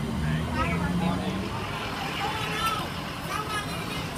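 Indistinct voices of several people talking over the steady low hum of idling vehicle engines.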